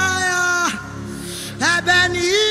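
Worship music: a long held sung note that slides down and fades about two-thirds of a second in. After a short softer stretch, singing resumes near the end, over a steady soft backing.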